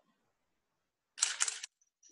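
A short noisy crackle about a second in, lasting about half a second in two close bursts, after near silence.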